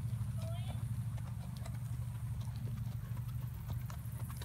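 Horses' hooves on the dirt footing of a riding arena: soft, irregular hoofbeats under a steady low hum.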